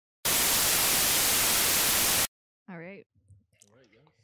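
A loud burst of white-noise static, about two seconds long, that starts and stops abruptly. It is an editing transition effect between segments, and a voice begins soon after it.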